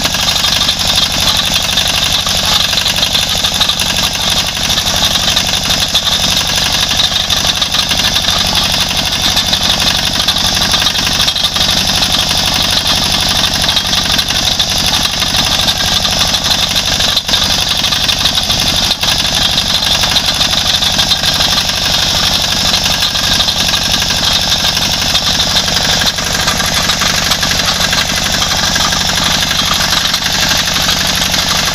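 Small motor vehicle's engine running steadily and loudly, heard close from on board as the vehicle moves.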